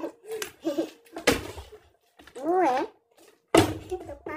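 An empty plastic water bottle is flipped and lands with a thud on a tabletop, falling on its side, a failed flip. Another sharp knock comes about a second in. Voices exclaim around them, with one wavering, drawn-out call just past the middle.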